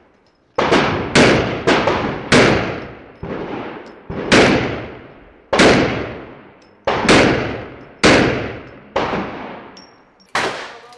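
About ten pistol shots fired in uneven groups during an IPSC shooting stage. Each shot is sharp, with a long echoing tail. Two of the shots are fainter, and the last comes about nine seconds in.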